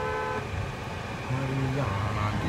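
A car horn held steady for over a second, cutting off about half a second in, heard from inside a car over the low hum of the car's engine.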